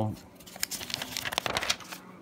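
A spiral-bound notebook's paper page being turned: a quick run of crinkly rustles and crackles starting about half a second in and lasting a little over a second.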